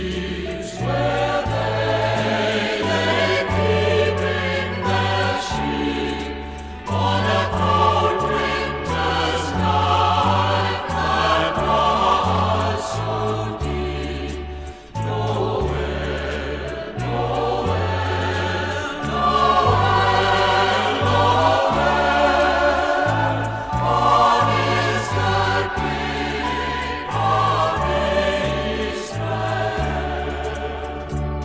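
Choir with orchestra playing a light, easy-listening arrangement of a Christmas carol, over a bass line and a steady beat, with short breaks between phrases about a quarter and half of the way through.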